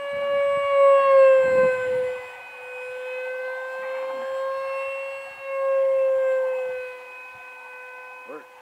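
The 64 mm electric ducted fan of a Hobbyking Sonic 64 RC jet whines in flight. It is one steady high tone that swells and drops slightly in pitch as the jet passes, first about a second in and again around six seconds in.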